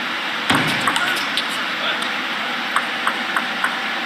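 Table tennis rally: a celluloid-type ball clicking off the rubber-faced bats and bouncing on the table, a quick series of sharp clicks a few times a second, over steady arena background noise.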